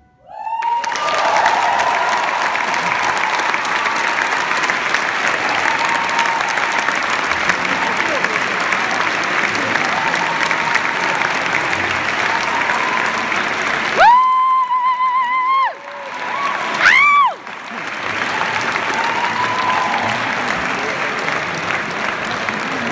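Audience applauding steadily after a song ends. Two loud, high, wavering whoops ring out over it about two-thirds of the way through, the second one shorter.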